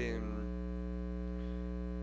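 Steady electrical mains hum in the microphone's audio chain, a constant buzz made of many even tones.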